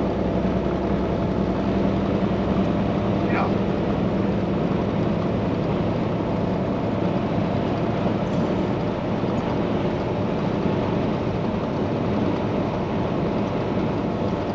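Semi truck cruising at highway speed heard from inside the cab: a steady low engine drone over tyre and road noise.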